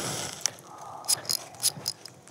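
A freshly struck wooden match burning close to the microphone: a soft hiss as it flares, then a few small sharp crackles.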